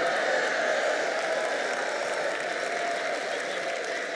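Large audience applauding and cheering, with a few voices calling out; it eases off slightly toward the end.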